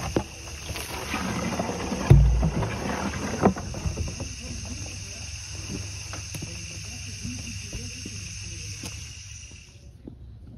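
Water from a garden hose running into plastic buckets, a steady splashing rush. A heavy thump about two seconds in, with a few lighter knocks after it.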